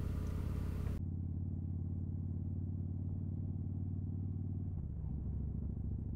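Harley-Davidson V-twin motorcycle engine running steadily under way, heard from on the bike, with a low even engine note. About a second in the sound turns duller as the higher frequencies drop out. The note dips briefly and recovers near the end.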